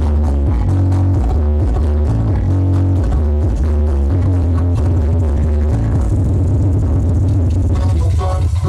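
Loud electronic dance music with heavy bass and a steady beat, played for street dancers.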